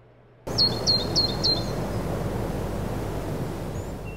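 Outdoor ambience: a steady rushing noise that cuts in about half a second in, with a small bird chirping four times in quick succession about a second in and once more near the end.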